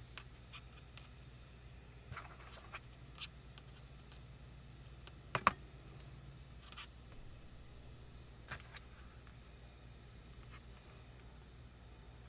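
Faint rustling and scattered light clicks of hands working yarn and handling a crocheted amigurumi piece on a tabletop, with one sharper tap about midway, over a low steady hum.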